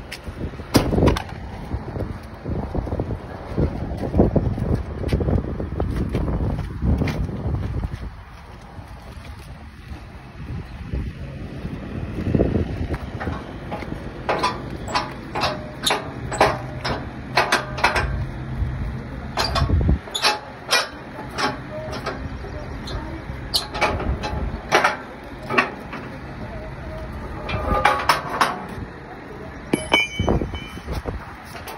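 A series of short sharp metallic clicks and knocks as the hood latches of a Volvo semi-truck are worked by hand, over wind noise and rumble on the microphone.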